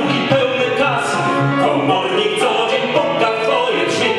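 Live singing of a retro Polish cabaret song with piano accompaniment.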